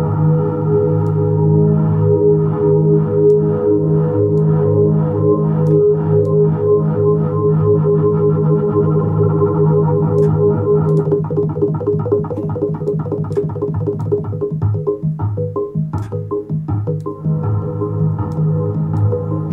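ORBIT software synthesizer (Kontakt library) playing a held, randomized four-source patch, dry with no effects, its sustained tones chopped into a fast rhythmic pulse. The pulse rate and depth shift as the rate setting is changed.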